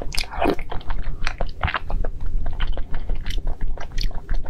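Close-miked mouth sounds of eating soft, wet food from a wooden spoon: a slurp just after the start, then chewing with many small wet clicks.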